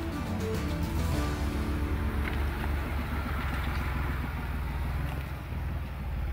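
Background music over the steady low rumble of a Ford Bronco's engine as it crawls slowly over rock.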